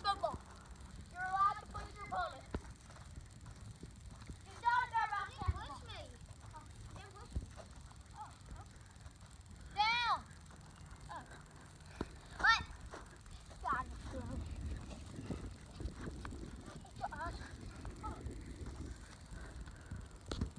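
Children's voices calling and shouting out now and then in short, high-pitched bursts, with quiet stretches between.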